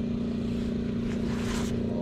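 A steady motor hum at one constant pitch with a low rumble beneath it, and a soft rustle about a second in.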